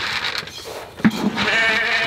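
A farm animal's call: one steady, pitched bleat-like cry of about a second, starting about halfway through after a short click.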